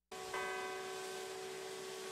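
Water from a large fountain splashing, with a bell ringing out about a third of a second in. The bell's higher notes die away within a second while its low hum lingers.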